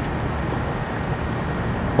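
Steady outdoor background noise, a low rumble with no single sound standing out.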